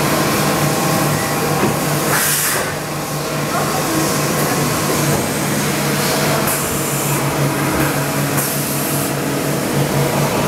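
Mazak Integrex i-200ST multi-axis CNC turning and milling center machining a part under coolant: a steady machine hum with several held tones over the hiss of coolant spray, broken by three brief bursts of louder hiss.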